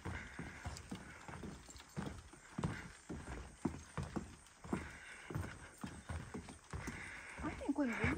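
Footsteps on a wooden boardwalk: a steady walking rhythm of knocks on the planks, about two steps a second.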